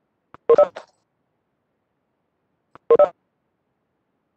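Two identical short electronic notification chimes from the Cisco Webex Meetings app, about two and a half seconds apart, each a quick two-note beep.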